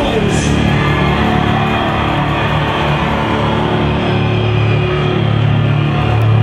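Gothic metal band playing live: distorted guitars and a heavy, droning low end in a steady, dense wall of sound, heard from the crowd.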